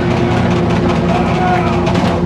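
Live rock band playing loud, with distorted electric guitar and bass guitar holding a steady, droning chord.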